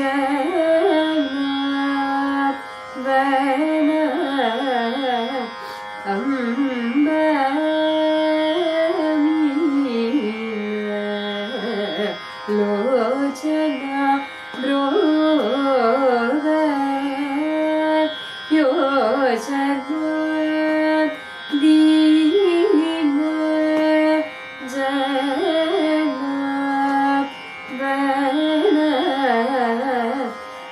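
A woman singing Carnatic classical vocal music, holding notes and decorating them with wavering, oscillating ornaments (gamakas), with short pauses for breath every few seconds.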